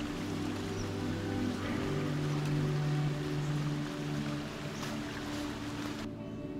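Slow ambient background music of long held low notes over a steady rushing noise, which cuts off abruptly at the end.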